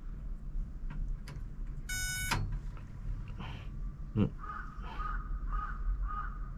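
A single short electronic beep from a kerosene heater about two seconds in. It sounds as its control knob is turned slowly toward ignition to set the anti-quake automatic shut-off, and its owner is unsure whether this is the right sound. From about four and a half seconds, a crow caws repeatedly.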